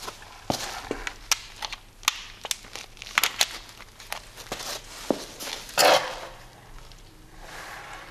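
Footsteps and handling noise on a concrete floor: scattered clicks and knocks as a battery charger's mains plug is pushed into a power strip, with a louder rustle about six seconds in.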